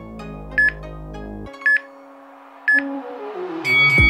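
Background electronic music with three short, loud beeps about a second apart: the workout interval timer's countdown to the end of a rest period. The bass drops out midway, and a falling sweep leads into the next section of music.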